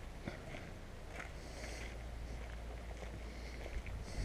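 Faint footsteps on cobblestone pavement over a steady low rumble of outdoor street ambience.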